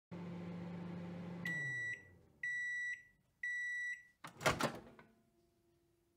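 Microwave oven running with a steady hum that drops in pitch as it shuts off about a second and a half in, then three long beeps about a second apart signalling the cook time is done, followed by a clunk of the door being opened.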